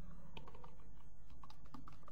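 Computer keyboard being typed on: a string of irregular keystroke clicks over a steady low hum.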